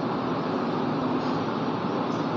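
Air conditioning running in a room: a steady, even hiss with no distinct events.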